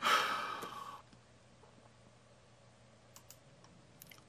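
A man's loud sigh, about a second long and fading away, followed by a few faint short clicks near the end.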